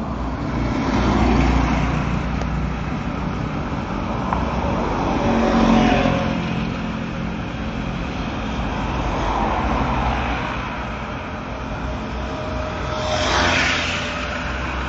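Road traffic: vehicles passing one after another, each swelling and fading, with a low steady rumble underneath. The loudest pass, near the end, is a motorcycle going by close.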